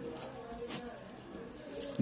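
Pen strokes on paper as a fraction line and a digit are written, with faint bird cooing in the background.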